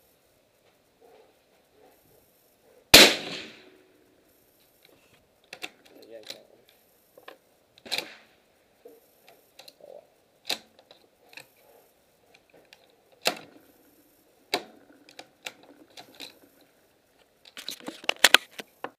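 One suppressed rifle shot from a Savage Model 10 bolt-action rifle fitted with a Gemtech Quicksand suppressor, a sharp report about three seconds in with a short ringing tail. It is followed by a string of quieter sharp cracks and clicks.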